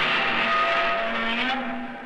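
A loud intro sound effect made of several held tones, sustained and then fading away near the end.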